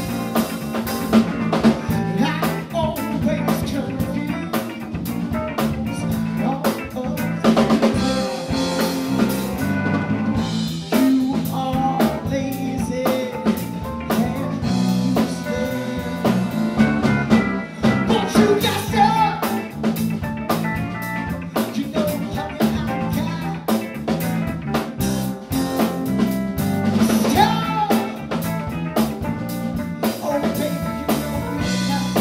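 Live rock-funk band playing: a steady drum-kit beat with electric guitar, bass and keyboard, and a female singer's voice coming in at times.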